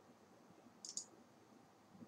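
A quick double click of a computer mouse button about a second in, against near silence.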